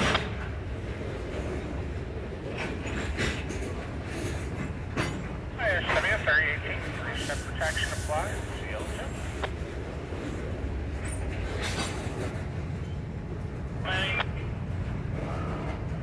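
Covered hopper cars rolling slowly past, with steel wheels on rail giving a steady low rumble and scattered clicks and knocks.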